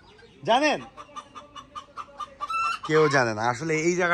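Chickens in a pen of fancy roosters: one rising-and-falling call about half a second in, then a run of quick clucks at about five a second.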